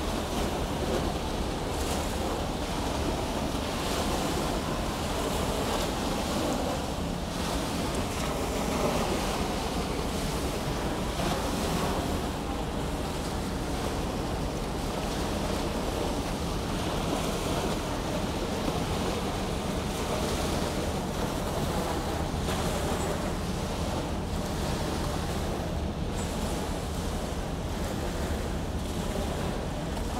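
Small river waves washing on the beach at the water's edge, with wind buffeting the microphone and a steady low hum underneath.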